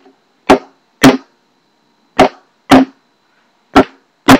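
Empty plastic bleach jug struck as a hand drum in a baguala rhythm: five sharp strikes in pairs about half a second apart, with a longer gap between the pairs.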